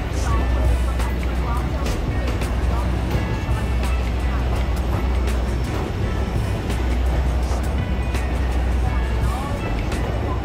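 Background music with vocals laid over the steady low rumble and clicking of a railway passenger car running through a rock tunnel.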